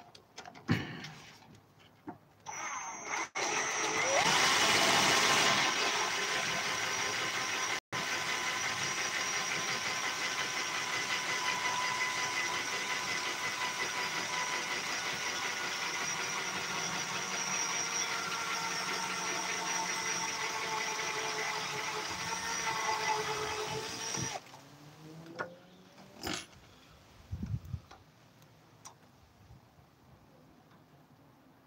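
Cordless drill spinning a circular saw's armature with a file held against the copper commutator, dressing its damaged surface: a steady motor whine with scraping, loudest and raspiest a few seconds after it starts. It starts about two and a half seconds in, cuts out for an instant about eight seconds in, and stops about 24 seconds in, winding down.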